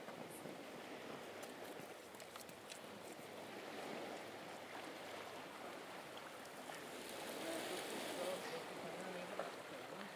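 Faint, steady wash of small waves on a sandy beach, swelling a little about four seconds in and again near the end.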